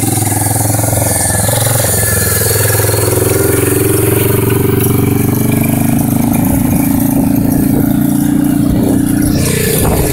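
Quad (ATV) engine running under thumb throttle, its pitch rising over several seconds as it speeds up and then holding steady as the quad moves off.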